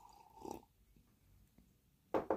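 A brief, faint sip from a mug about half a second in, then near silence: room tone.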